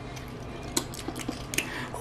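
A few light clicks of metal kitchen tongs against chicken wings and a plate, one a little under a second in and another near the end, over a low steady background.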